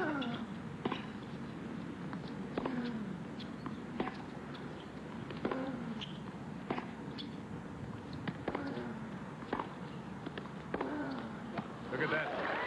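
Tennis ball struck back and forth in a long baseline rally: a dozen or so crisp racket hits and bounces about a second apart. A short falling tone follows several of the hits.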